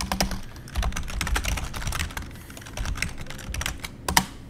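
Typing on a computer keyboard: a quick, irregular run of key clicks as a terminal command is entered.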